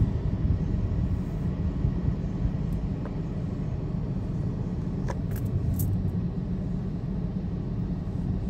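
Steady low rumble of a car driving, road and engine noise heard from inside the cabin. A few faint brief clicks come around five to six seconds in.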